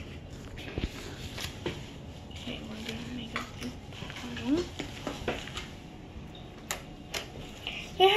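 Hands folding and kneading glitter into white slime, making scattered small clicks and sticky snaps.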